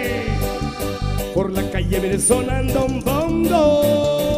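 Live norteño band music, instrumental: accordion melody over bass and a steady drum beat of about four strokes a second.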